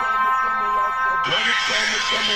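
Dubstep track: sustained synth tones with a sampled voice underneath, and a hissing noise layer that comes in suddenly a little past a second in.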